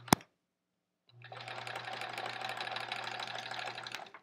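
A sharp click right at the start, then an electric sewing machine stitches a seam, running steadily with rapid needle strokes over its motor hum for about three seconds before stopping near the end.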